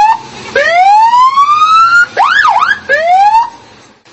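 Police siren sounding in short bursts: one long rising wail, then two quick up-and-down yelps, then a shorter rise that cuts off.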